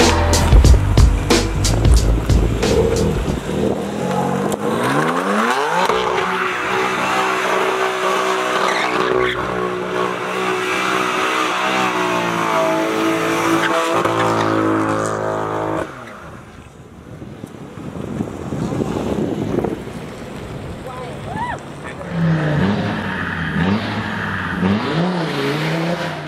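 BMW F80 M3's twin-turbo straight-six revving up over about two seconds and held at high revs while the rear tyres spin and squeal in a burnout. The sound cuts off abruptly about two-thirds of the way through.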